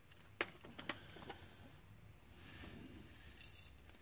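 Faint handling sounds of diamond-painting supplies: a few small plastic clicks in the first second and a half, then a soft rustle, as the drill tray and applicator pen are handled.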